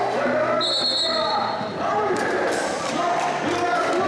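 Crowd voices and chatter around a basketball game, with a steady high whistle blast starting about half a second in and lasting just over a second. A few sharp knocks follow about two seconds in, fitting a ball bouncing on the concrete court.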